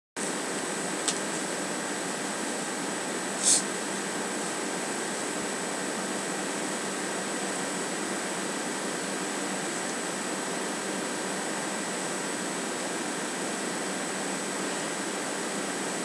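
Steady, even hiss of room noise, like a running fan, with a faint high-pitched whine through it. There is a single click about a second in and a brief burst of noise at about three and a half seconds.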